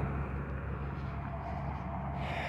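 Steady low hum of street traffic and engines in the background.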